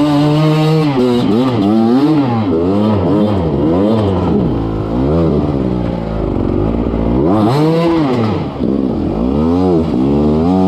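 Beta RR 300 two-stroke enduro engine revved up and down in quick bursts, about once or twice a second, as the rider works the throttle on a steep, rocky climb. The revs drop low for a moment past the middle, then rise sharply again.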